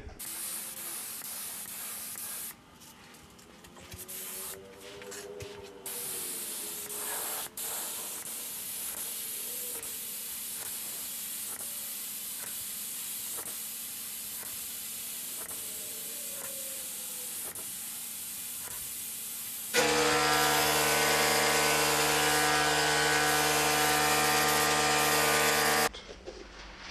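Iwata LPH 400 gravity-feed spray gun spraying black sealer, a steady hiss of air that stops about three seconds in and starts again a few seconds later. Near the end a louder, steady humming machine sound takes over.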